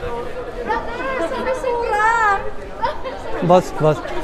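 Speech only: people talking and chattering, with one voice wavering up and down in pitch about two seconds in.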